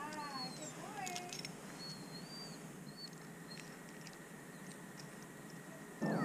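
Faint small birds chirping, short high calls repeating every second or so, with a brief wavering call in the first second.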